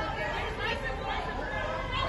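Several people talking at once, their voices overlapping with no words clear.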